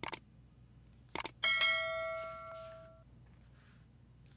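Subscribe-button animation sound effect: quick mouse clicks about a second in, then a bright notification-bell ding that rings out and fades over about a second and a half.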